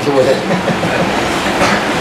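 A small group of listeners reacting together: a dense, even wash of noise from many people at once, with no single clear voice.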